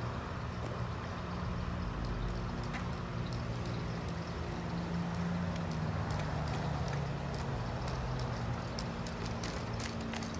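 Steady low hum of an idling motor vehicle, with faint scattered knocks from a bicycle rolling down concrete steps.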